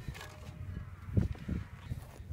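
A couple of soft footsteps on gravel over a steady low rumble.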